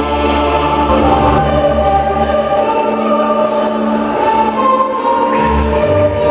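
Choral music: many voices holding long, overlapping notes over a steady low note.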